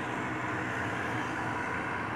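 Steady background noise, an even hiss and rumble with no distinct events.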